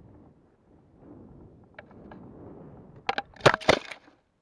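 Model rocket's onboard camera capsule landing in a desert shrub under its parachute: a faint rustle, then about three seconds in a quick cluster of sharp cracks and snaps as it crashes into the twigs.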